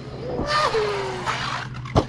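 Traxxas Maxx V2 RC monster truck's brushless motor and drivetrain: a brief rising whine, then about a second of harsh grinding noise while a whine falls in pitch, and a sharp knock near the end. It is the sound of the spur gear coming out of mesh and off the truck.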